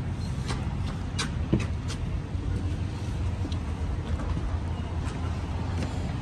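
Steady low road and engine rumble inside a moving car's cabin, with a few faint clicks and a brief knock about one and a half seconds in.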